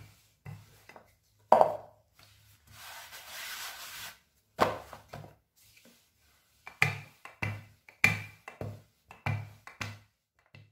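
Wooden rolling pin working dough on a wooden board: a string of irregular knocks and thumps as the pin is pushed and pulled, the loudest about one and a half seconds in, with a longer rushing roll of the pin across the dough around three to four seconds.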